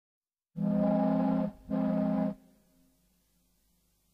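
Two blasts of a low ship's horn, a longer one and then a shorter one, sounding as the intro of a song.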